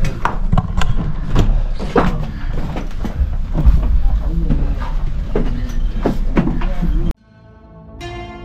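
Irregular footsteps and knocks on wooden steps inside a narrow stone passage, with snatches of voices and a heavy low rumble. The sound cuts off suddenly about seven seconds in, and soft plucked-string music begins near the end.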